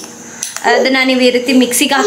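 A metal spoon clinking and scraping against a small ceramic ramekin. A voice talks over it from about half a second in.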